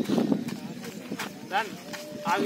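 Footfalls of a man running on a dirt field with another man on his back, a quick run of heavy thuds near the start, mixed with brief snatches of voices.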